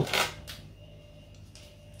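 A brief rustle and one light click from cardboard and paper packaging being handled, then quiet room tone with a faint steady hum.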